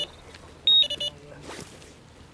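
Electronic carp bite alarm beeping: a single higher tone a little over half a second in, then a few quick beeps, the sign of line being drawn through the alarm on the rod. A brief rustle follows.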